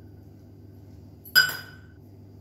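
A small stainless-steel cup gives one sharp metallic clink about a second and a half in, ringing briefly, as soaked cashews are tipped from it into a steel mixer-grinder jar.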